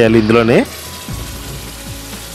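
Tamarind juice hitting hot tempering oil in a brass kadai: a steady sizzle of frying that starts as the voice stops about half a second in.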